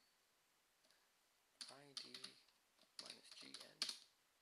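A few computer keyboard keystrokes as a short command is typed, starting after about a second and a half of near silence. A man's voice speaks quietly over the typing.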